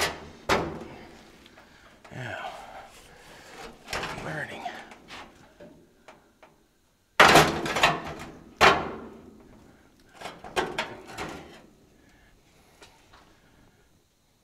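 Sheet-metal car dash panel clunking and knocking against the body as it is shoved and worked into place, a series of loud separate clunks with a cluster near the end; the dash is hitting the body and will not seat.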